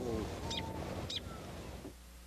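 A man's drawn-out vocal 'oh' trails off, then two short, high bird chirps sound about half a second and a second in over faint outdoor background, which fades out near the end.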